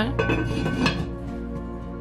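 Heavy lid of a cast iron Dutch oven set down onto the pot, a few metal clinks and a short scrape in the first second, over soft background music.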